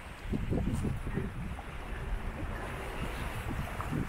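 Wind buffeting the microphone over the steady wash of sea water along a sailboat's hull while under sail.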